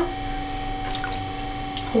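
Electric potter's wheel motor running with a steady hum, while wet clay squishes softly a few times about a second in under hands compressing it to recenter it on the wheel.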